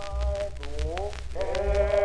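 Background music: sung voices holding long, wavering notes that glide between pitches, over a low bass.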